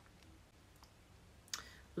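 Quiet room tone with a few faint clicks, and a short breath about a second and a half in.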